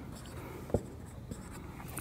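A marker writing on a whiteboard: faint scratching strokes, with a sharp tap about three-quarters of a second in.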